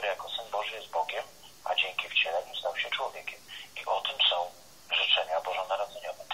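Speech only: a person talking continuously in short phrases, the voice thin and narrow-sounding as over a telephone line.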